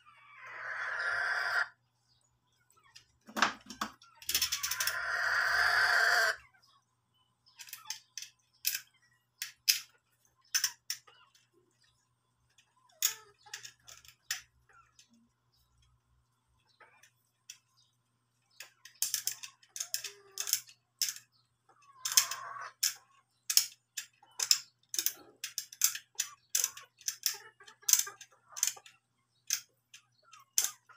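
A rooster crows twice in the first few seconds. After that comes a long run of short, irregular clicks and scrapes as a utility knife blade trims a small part of the cue.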